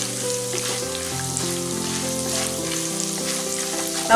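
Peanuts, chana dal and dry coconut frying in hot oil in a kadai, a steady sizzle as they are stirred with a wooden spatula. Soft background music with held notes plays over it.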